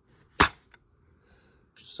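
A plastic DVD keep case snapped open: one sharp click.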